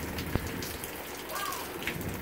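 Hail falling in a steady patter, with one sharp knock about a third of a second in: a large hailstone hitting the roof.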